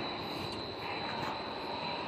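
Steady mechanical background hum of a factory hall, with a faint high-pitched whine running through it.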